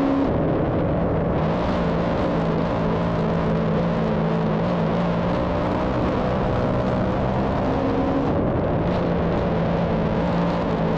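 Big-block dirt modified's V8 engine running hard at racing speed, heard from the car's on-board camera as a steady, loud drone. Its note dips and shifts briefly just after the start and again about eight and a half seconds in.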